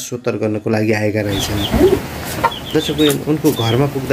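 Speech for about a second, then chickens clucking with short, high, falling bird chirps over the top.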